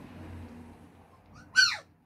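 A 25-day-old puppy gives one short, loud yelp about one and a half seconds in while playing with its littermates, the cry falling sharply in pitch.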